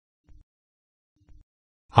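Near silence between sentences of a synthesized voice, broken by two faint, short, low blips about a second apart. The synthesized voice starts again right at the end.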